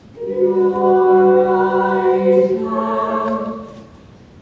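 A vocal quartet of one male and three female voices singing in close harmony: a long held chord that moves to a new chord about two-thirds through, then fades away just before the end.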